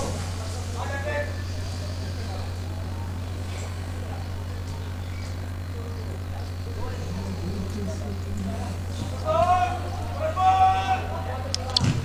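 Football match sound over a steady low hum: voices calling out on the pitch, louder about three-quarters of the way in, and a sharp kick of the ball near the end.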